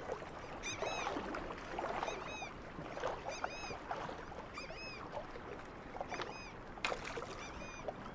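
A bird calling repeatedly, short arched chirps with a ringing, overtone-rich quality, roughly one to two a second, over a steady soft hiss of outdoor background.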